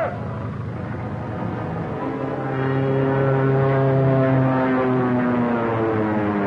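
Propeller airplane engine running in flight, a steady hum that grows louder about two seconds in and then sinks slowly in pitch near the end.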